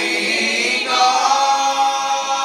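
Mixed male and female gospel vocal ensemble singing in harmony, holding a chord and moving to a new one just under a second in.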